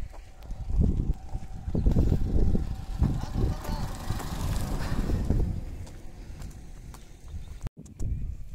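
Wind buffeting and handling noise on a handheld microphone: irregular low thumps and rumble, with a hiss swelling in the middle and fading. The sound cuts out completely for an instant near the end.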